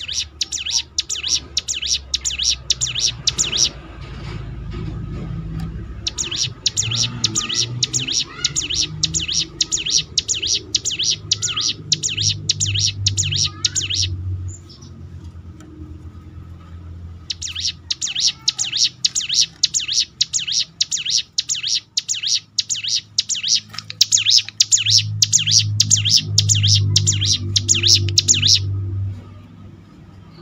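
A ciblek gunung (a prinia) sings in fast, even runs of high, sharp notes, about ten a second, like a machine-gun rattle: the 'ngebren' song. It comes in three long bursts, each of several seconds, with short pauses between them. A low hum lies underneath.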